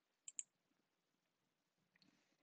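Near silence, with two quick clicks close together about a third of a second in.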